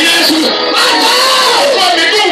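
A crowd of people shouting and crying out together, many loud voices overlapping without a break.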